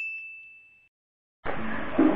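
A single bell-like ding, one clear high tone that rings and fades away over about a second: an edited-in transition sound effect. After a moment of silence, the camera's room noise comes back in about a second and a half in.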